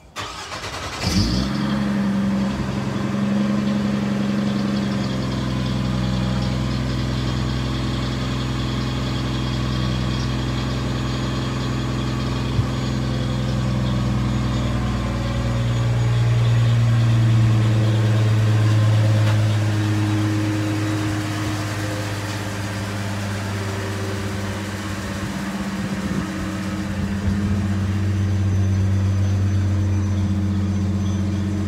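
Car engine starting about a second in, then idling steadily with a deep, even hum.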